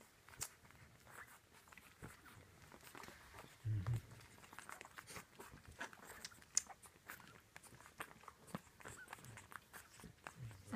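Two-week-old French Bulldog puppies suckling at their mother, with faint, scattered wet clicks and smacks, and a brief, louder low sound about four seconds in.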